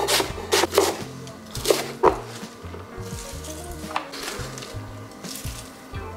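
Chef's knife slicing through green cabbage and striking a wooden cutting board: a quick run of chops in the first two seconds, then a few more spaced out, over background music.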